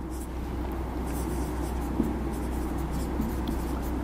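Marker pen scratching across a whiteboard in short strokes as text is written, over a steady low hum.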